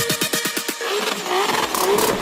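Electronic dance music with a fast, quickening drum build that drops out about a second in, giving way to a rally car's engine revving with a wavering pitch.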